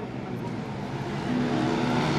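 Racing motorcycle engine running steadily, growing louder in the second half as it comes nearer.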